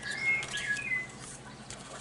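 Pencil drawing a line along a plastic ruler on paper: a light scratch with short high squeaks through the first second, then fainter.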